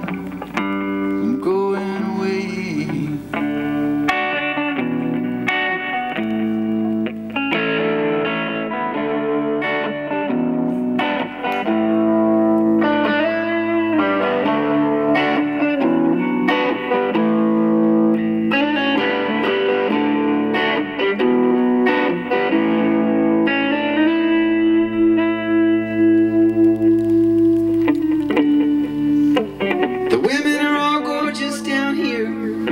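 Solo electric guitar playing an instrumental passage of sustained, ringing chords that change every second or two, with no singing.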